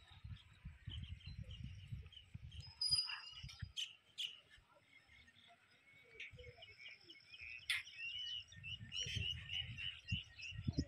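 Birds chirping and calling over a steady high-pitched chorus, with wind rumbling on the microphone in the first few seconds and again near the end. A single sharp click comes a little past the middle.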